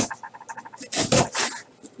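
Box cutter slicing through the packing tape on a cardboard shipping case: a run of quick light ticks, with two short scraping rasps about a second in.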